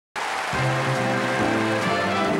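Swing band music led by a trumpet section playing. It cuts in just after the start, and sustained brass chords over a bass line follow.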